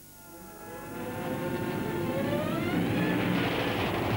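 The soundtrack of an animated film swells in from a faint hum. Several tones glide slowly upward together as it grows loud.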